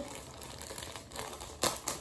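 Soft crinkling of packaging as children's clothes are handled, with a couple of short louder rustles in the second half.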